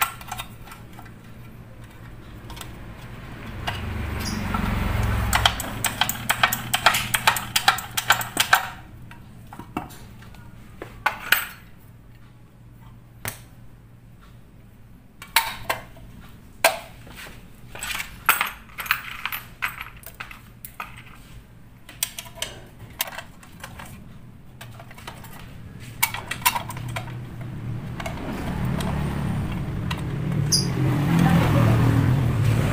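Light metallic clicks and clinks from small steel kick-starter parts (pinion gear, spring, shaft) handled and seated by hand in a scooter's CVT cover. They come in two busy spells, with quieter gaps between. A low engine rumble swells briefly about four seconds in and builds again near the end.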